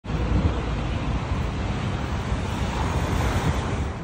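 Wind buffeting an outdoor microphone: a loud, uneven low rumble under a steady hiss.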